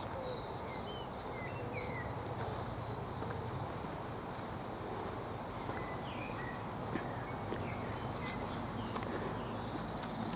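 Outdoor ambience: small birds chirping with short, high calls scattered throughout, over a steady low rumble of distant traffic.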